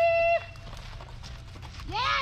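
A handler's long, high-pitched held call breaks off about a third of a second in. The quick, light footfalls of a border collie running over packed dirt follow, and a second rising-and-falling call starts near the end.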